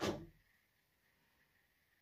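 A woman's short hesitant "um" at the very start, then near silence: room tone.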